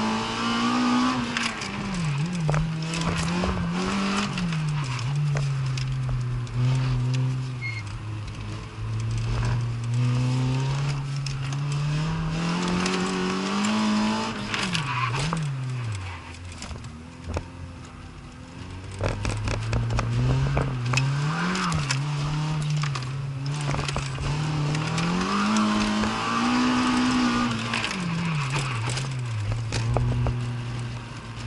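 Citroën Saxo VTS's 1.6-litre 16-valve four-cylinder engine heard from inside the cabin, driven hard through a slalom course: the revs climb and drop again and again through short bursts of acceleration, with tyres squealing in the turns. About halfway through, the engine falls to a low, quieter note for a few seconds before pulling up again.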